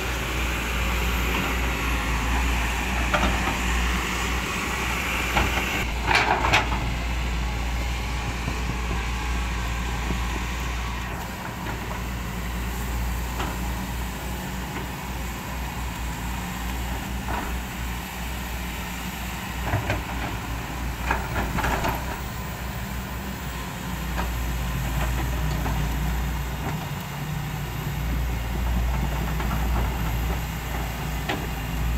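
Diesel engines of hydraulic crawler excavators running steadily as the machines work in deep mud, with a few short knocks and squeals from the working machines.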